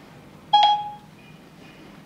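A single electronic chime from Siri, the phone or watch voice assistant, sounding as it is dismissed. It starts sharply about half a second in and fades within about half a second, followed by two faint short higher beeps.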